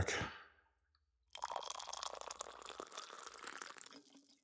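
Tea being poured into a mug, a steady pouring sound that starts just over a second in and lasts about two and a half seconds.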